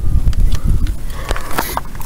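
Handling noise from a handheld camera being moved around inside the cabin: an uneven low rumble with scattered clicks and rustles, the clicks bunching up near the end.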